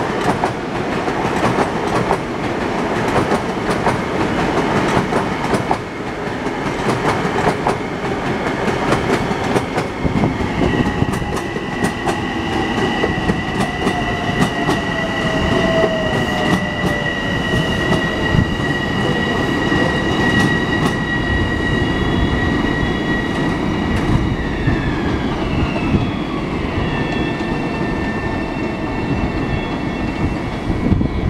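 Long Island Rail Road electric multiple-unit train passing close by, wheels clacking over the rail joints. From about ten seconds in, a steady high whine rises over the rumble and drops in pitch near the end.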